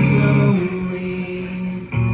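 Live rock band music: an electric guitar chord is strummed and left ringing, thinning out over the next second, with a brief drop just before the next chord comes in.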